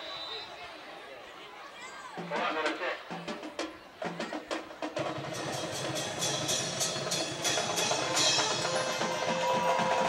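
Marching band drums: a few single strikes, then a fast, dense drum cadence from about halfway through that grows steadily louder as the kickoff nears.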